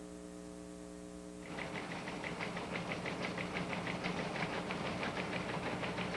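Steady electrical mains hum with its overtones, then about a second and a half in a fast, even clicking starts over it, about five clicks a second, like a typewriter or teletype.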